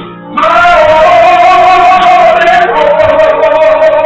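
Church choir singing a hymn over organ: the voices come in loudly about half a second in and hold one long note with vibrato, stepping down slightly past halfway.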